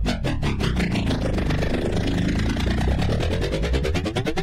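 Techno music from a DJ set: a fast, steady electronic beat with a dense, sweeping synth texture over heavy bass.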